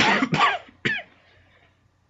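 A person coughing three times in quick succession, all within the first second.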